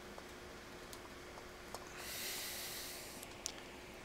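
Quiet workroom with a faint steady hum and a few faint clicks of handling; about halfway in, a soft breath out through the nose lasting about a second and a half.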